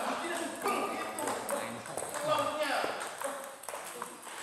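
Table tennis balls being struck by bats and bouncing on the tables, with several rallies going at once: an irregular stream of sharp pocks. Voices talk in the background.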